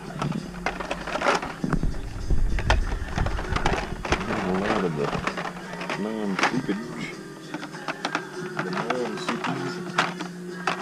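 Fast-forwarded sound of hands rifling through blister-packed Hot Wheels cars on peg hooks: quick plastic clicks and clatter, with a steady hum and pitch-raised, chirpy snatches of voice from the speed-up.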